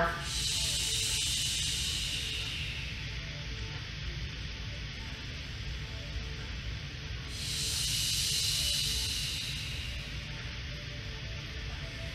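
A woman breathing deeply for a slow breathing exercise, heard as two long hissing breaths of about three seconds each. The first is an exhale through the mouth at the start, and the second comes about seven seconds in. Soft background music plays underneath.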